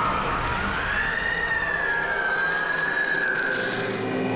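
Trailer sound design: a single high tone that wavers slowly up and down like a siren over a dense hiss, with the hiss swelling near the end.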